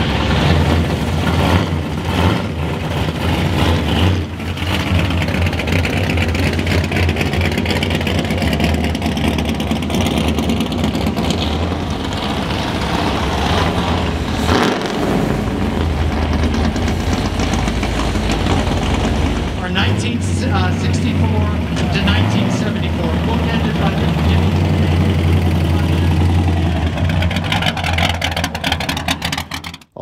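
A classic Ferrari Dino's V6 engine running as the car moves slowly, then, about halfway through, a classic Dodge Challenger's engine as it drives slowly by; a steady low engine rumble throughout, with people talking in the background.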